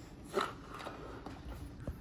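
Breath blown into a latex balloon to inflate it: a short puff of air about half a second in, then fainter blowing, with a small click near the end.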